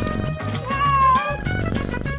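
A cat meows once, a single rising-and-falling call about a second in, over steady background music.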